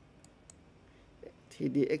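Two faint computer mouse clicks about a quarter second apart.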